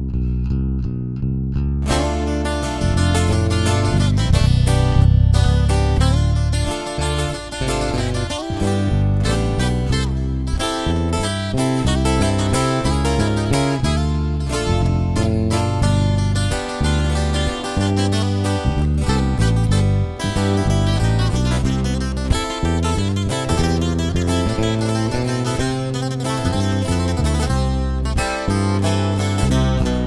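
Instrumental intro of a regional Mexican corrido band: a lone guitar plays for about two seconds, then the full band comes in with plucked and strummed guitars over bass.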